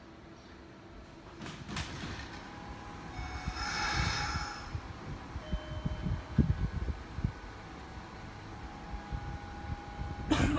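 Kintetsu electric train standing at a station platform, with a short hiss of released air about four seconds in.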